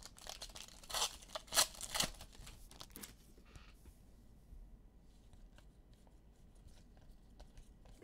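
A foil trading-card pack wrapper being torn open, with quick sharp crinkling rustles over the first three seconds. After that come only faint, soft clicks of the cards being handled.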